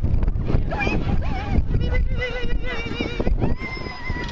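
Wind buffeting the microphone with a steady low rumble. Over it come high-pitched, wavering calls in the second half, ending in one long drawn-out call.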